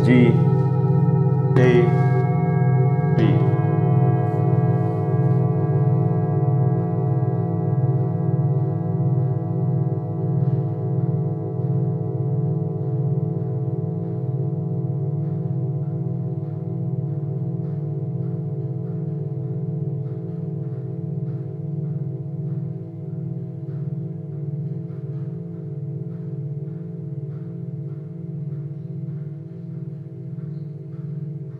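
Hand-hammered metal singing bowls struck one after another with a padded mallet: three strikes in the first few seconds, about a second and a half apart. Then their overlapping tones ring on with a slow wavering pulse, fading gradually.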